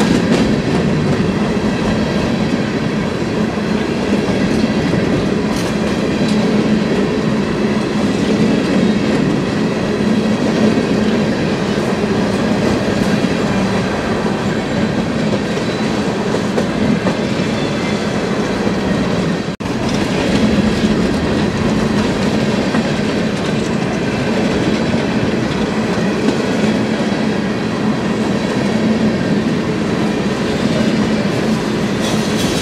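Loaded open hopper cars of a long freight train rolling steadily past at about 32 mph, a continuous rumble and rattle of wheels on rail.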